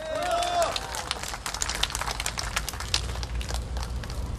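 A crowd clapping, many irregular hand claps, with a voice calling out briefly at the start.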